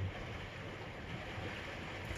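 Low, steady background noise with a faint low rumble and even hiss, inside a boat's canvas-enclosed cabin; no distinct event stands out.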